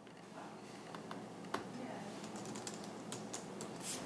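Laptop keyboard being typed on: irregular key clicks over a low, steady room hum.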